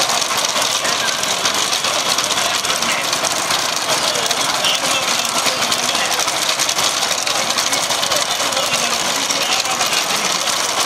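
A motor vehicle's engine running steadily at speed, under a loud, even rush of wind and road noise.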